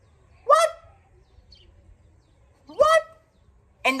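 A person's voice making two short, high, rising non-word exclamations about two seconds apart, acting out a reaction of disbelief.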